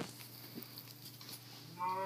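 German shepherd puppy giving one long, steady whine, starting near the end, after a stretch of faint clicks.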